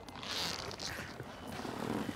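Soft, drawn-out rasping and scraping that swells and fades a few times, made by a rubber stamp being moved slowly over paper on a desk.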